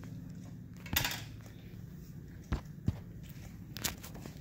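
Faint eyebrow threading: a short swish of the twisted cotton thread about a second in, then a few small sharp snaps as it catches and plucks brow hairs, over a low steady electrical hum.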